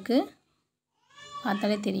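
Speech only: a voice speaking Tamil in short phrases, dropping to dead silence for about a second between them.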